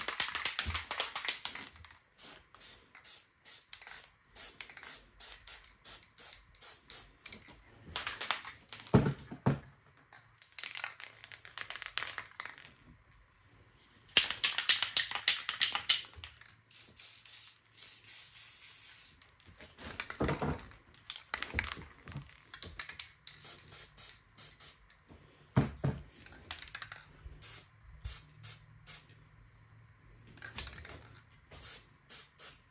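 Aerosol spray-paint can hissing in several sprays of a second or two each, with runs of short, regular clicks and puffs between them.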